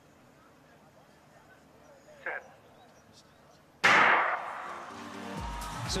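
Starting gun fired once, a sharp crack with a ringing decay, sending off a men's 400m race in a hushed stadium; it comes near the end, after a short call about two seconds in.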